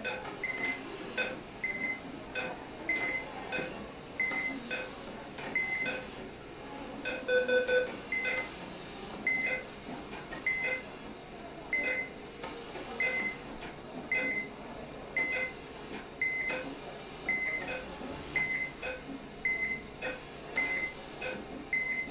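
Hospital patient monitor beeping steadily, a short high beep about every two-thirds of a second. A louder, lower double tone sounds once around seven to eight seconds in.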